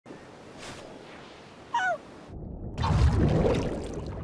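A cartoon watermelon creature's short, wavering squeak falling in pitch, then a loud splash about three seconds in as it plunges into the sea.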